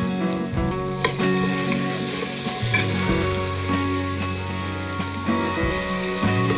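Black chickpeas and masala sizzling as they fry in an open pressure cooker, at the stage where the oil has separated from the masala, with a ladle stirring them. Background music plays over it.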